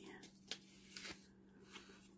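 Near silence with a few faint, brief rustles of paper pieces being picked up and handled.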